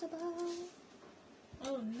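A woman's voice holding a short, level hummed 'mmm' for about half a second, then a pause, a soft click, and her speech starting near the end.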